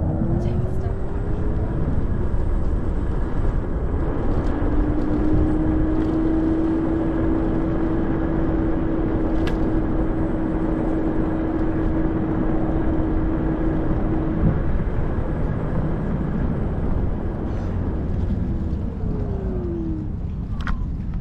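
Ninebot Max G30P electric kick scooter riding along a park path: steady rumble of wind and tyres on the mic. The motor's whine slides in pitch as it speeds up at the start, holds one steady pitch through the middle while cruising, and slides again as it slows near the end.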